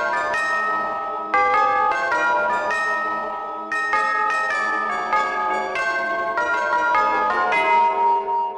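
Clock-like bell chimes playing a slow melody, a series of struck notes that each ring on into the next.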